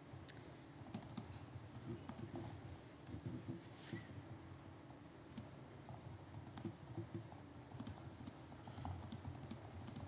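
Faint, irregular clicks of computer keyboard keys being tapped, over a low steady room hum.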